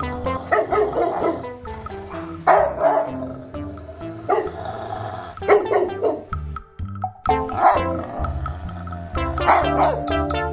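Rottweilers barking, about six loud barks a second or two apart, over background music.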